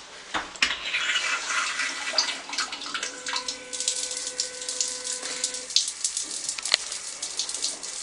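An electronic bidet toilet seat's wash nozzle spraying a jet of water into the toilet bowl: a steady hiss of spray peppered with sharp splashes, with a faint steady tone from about three seconds in to past five.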